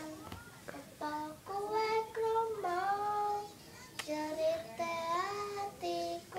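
A young child singing unaccompanied in a high voice, holding notes that slide up and down, in short phrases with brief pauses between them.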